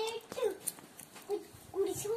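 A young girl's voice making short wordless vocal sounds: a handful of brief pitched syllables, one after another, with a few faint clicks between them.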